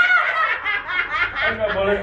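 A group of young women laughing hard together in a quick run of high-pitched laughs, mixed with excited exclamations.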